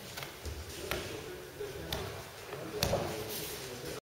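Hands and bodies striking tatami mats during an aikido pin: three sharp slaps about a second apart, the last with a heavier thud.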